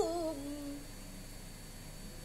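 A boy reciting the Quran in melodic tilawah style, closing a phrase with a drawn-out note that glides down in pitch and dies away within the first second.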